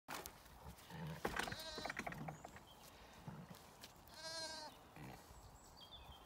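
Zwartbles lambs bleating: a high bleat about one and a half seconds in, and a louder, longer one about four seconds in.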